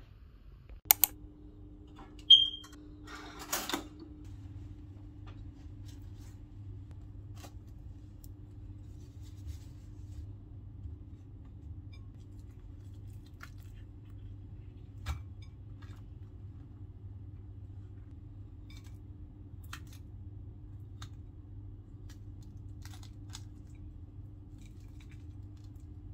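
A small electric appliance switched on: a click, then a short high beep, then a steady low hum that runs on. Faint scattered taps and ticks sound over the hum.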